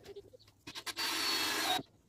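Cordless drill driving a screw into pallet wood: a short burst of about a second of high motor whine over grinding noise, cutting off abruptly as the drill stops.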